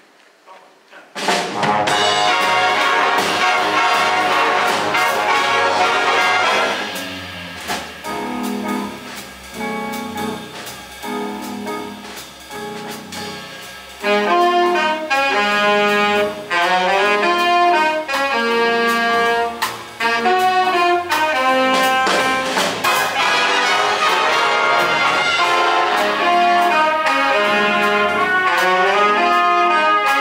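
High school jazz band of trumpets, trombones, saxophones and drum kit bursting in loudly about a second in. It drops to a softer, rhythmic passage for several seconds, then comes back in full and loud about halfway through.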